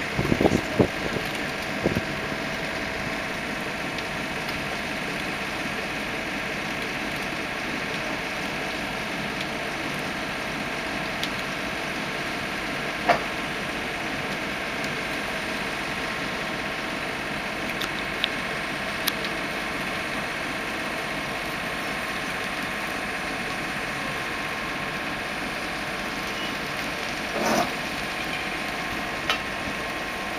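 Diesel engine running steadily at idle. A few sharp knocks stand out over it: a cluster in the first two seconds, one around the middle and a couple near the end.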